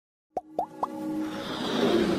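Motion-graphics intro sound effects: three quick rising pops about a quarter second apart, then a whoosh that swells over a sustained tone.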